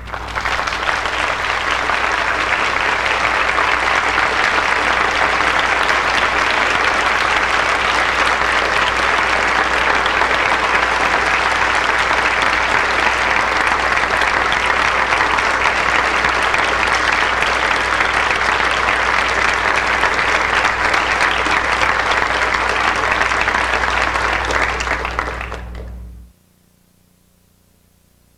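Large audience applauding steadily. It swells up in the first second and fades away near the end, with a steady low hum underneath.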